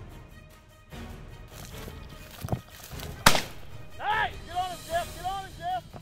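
A shotgun shot a little past three seconds in, with a fainter sharp crack just before it, then a pheasant's cackling call: one loud note followed by about five quicker ones.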